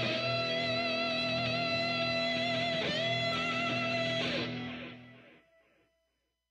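Rock music led by electric guitar holding sustained notes, then fading out from about four and a half seconds in to silence.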